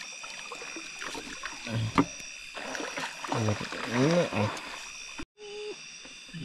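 Short exclamations of a man's voice over a steady, high-pitched chorus of night insects. There is a sharp click about two seconds in, and the sound cuts out suddenly for a moment near the end.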